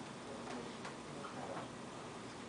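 Dry-erase marker drawing short strokes on a whiteboard: a series of faint squeaks and taps, about two or three a second, over quiet room tone.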